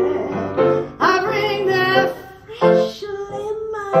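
A woman singing a blues-jazz song over piano accompaniment, with a wavering sung phrase about a second in.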